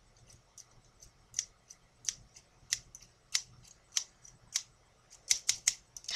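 A pair of scissors with blue handles snipping open and shut, the blades clicking sharply about once every half second or so, then four quick snips in a row near the end.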